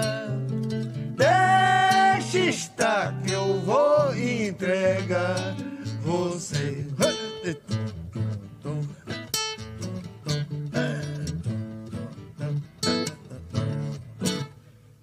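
Two acoustic guitars strumming a rhythmic accompaniment in a break between sung verses, with a voice singing long, gliding notes over the first few seconds and short phrases later on.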